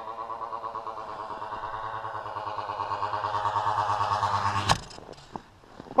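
45cc Husqvarna chainsaw engine, a single-cylinder two-stroke, running at steady high revs in an RC plane and growing louder as the plane comes in. Near the end a sharp knock is heard and the engine sound cuts off abruptly, as the plane comes down on the snow-covered ice.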